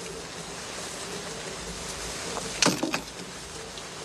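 Steady room tone with a faint hiss, broken once, a little over halfway through, by a short sharp sound.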